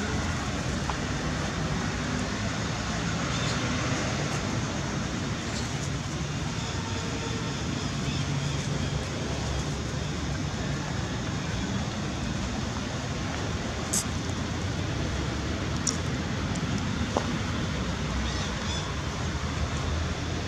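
Steady outdoor background rumble, strongest in the low end, with a few faint sharp clicks about two-thirds of the way through.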